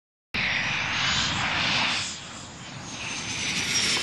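Military jet aircraft speeding along a runway: loud jet engine noise that starts abruptly, with a high whine slowly falling in pitch. It dips about halfway through, then builds again.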